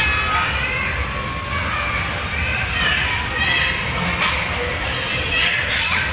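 Background babble of children's and adults' voices, with no one speaking close by, over a steady low rumble of crowd noise.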